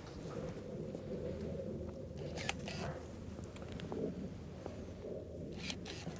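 Hand pruning shears snipping grapevine canes: a few short, sharp clicks about two and a half seconds in and again near the end, over steady low background noise.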